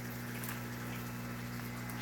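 Steady low hum of a pump running, with a faint hiss of water.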